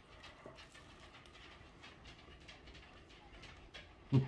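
Near silence with a few faint, scattered soft clicks: a man biting into and chewing a sandwich.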